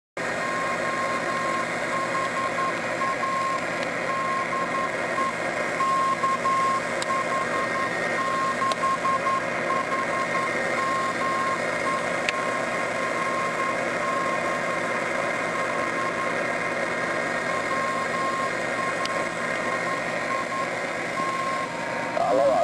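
The KH6HME/B 6-metre Morse code beacon from Hawaii, received over F2 propagation on a Kenwood TS-680S: a thin keyed tone near 1 kHz sends dots and dashes over steady receiver hiss, weak and fading in and out. A few faint static clicks come through.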